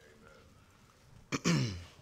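A man clearing his throat once, about a second and a half in: a sharp rasp that falls in pitch and lasts about half a second. Before it there is only faint room tone.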